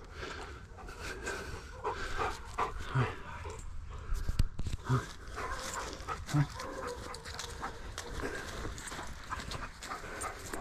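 A Bernese mountain dog panting, with three brief low vocal sounds spaced a second or two apart. A sharp thump of movement close to the microphone comes a little over four seconds in.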